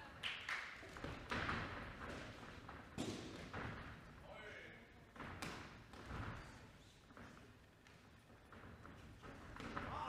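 Scattered thuds of kickboxing strikes, gloves and shins landing, with footwork on the ring canvas, several sharp impacts spaced irregularly. Shouting voices are heard between them.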